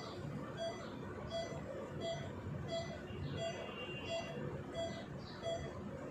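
Operating-theatre patient monitor beeping steadily with the pulse, a short, same-pitched beep about three times every two seconds.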